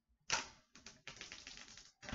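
Clear plastic wrap being peeled off a smartphone box: a sharp rip about a quarter second in, then about a second of rapid crackling as the film pulls free.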